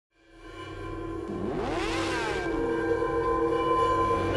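Intro stinger: a sustained synthesized drone fading in from silence, with a sweeping rise and fall in pitch about halfway through, leading into music.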